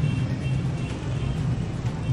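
Steady low rumble of city street traffic with faint background music under it.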